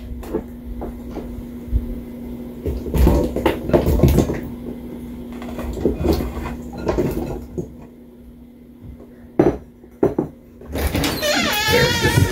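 Scattered knocks and clatter of kitchen prep: green tomatoes being cut on a board and tipped from a glass bowl into a stainless steel stockpot. A steady low hum runs through the first half, and two sharp knocks come near the end.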